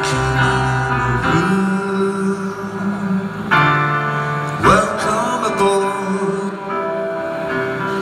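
Live band playing a slow song led by acoustic guitar, with held chords that change every second or two.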